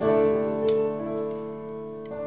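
Live band music in an instrumental stretch: sustained keyboard chords, a new chord struck at the start and ringing on, with the notes changing about a second in.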